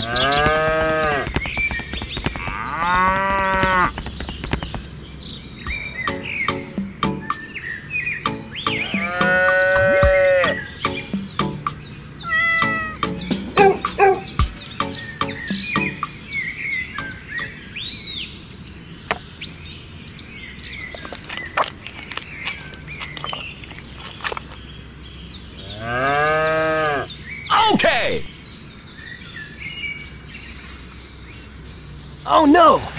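Cow mooing: about four long moos, each rising and then falling in pitch, with bird chirps between them.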